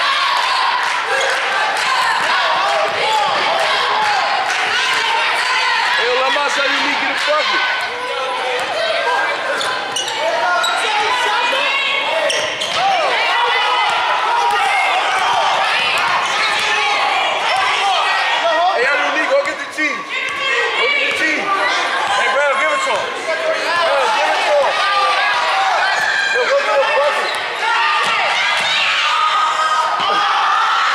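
Basketball being dribbled on a hardwood gym floor during play, under a constant mix of voices from players and spectators in a large gymnasium.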